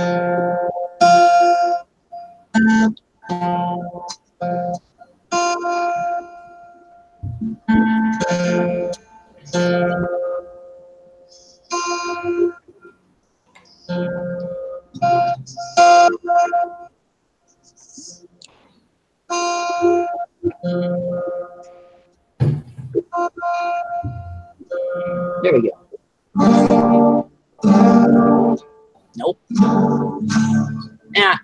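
Guitar being tuned: single strings plucked over and over at the same few pitches, then a few strummed chords near the end to check the tuning. The sound keeps breaking off abruptly into silence between notes.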